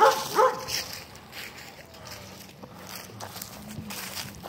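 A dog whines briefly at the start, followed by quieter footsteps through grass and dry fallen leaves.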